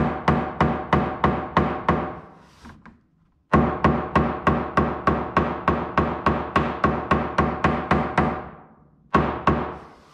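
Ball-peen hammer tapping rapidly through poster board onto the edge of a Corvair's sheet-metal body structure, about four blows a second, each with a short ring. The tapping creases the metal's outline into the board to make a template for a patch plate. There is a brief pause about three seconds in, then a long run of taps that fades out, and a few more near the end.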